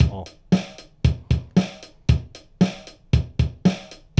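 Nux MG-300 multi-effects processor's built-in drum machine playing its 4/4 Blues Rock pattern at about 115 beats per minute, with an even drum hit about twice a second.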